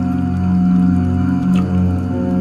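A deep, steady chanted "Om" held as a low drone, layered with ambient meditation music.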